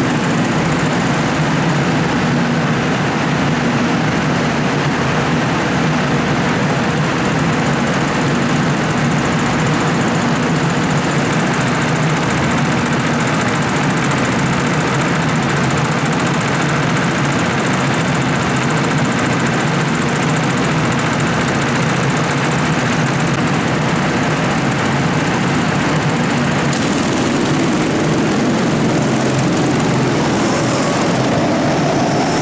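Several go-kart engines running together during a race, a loud, steady blend of engine noise with no break.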